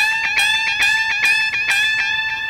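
Electric guitar playing a high A reached by bending the first string at the 15th fret up a whole tone. The bent note is held steady in pitch and picked repeatedly, about five strokes a second.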